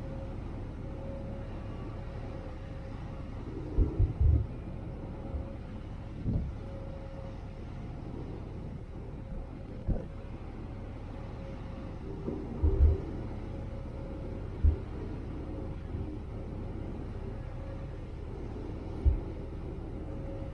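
Large passenger ferry under way: a steady low rumble from its engines and the churning water, with a faint steady hum and a few short low thumps.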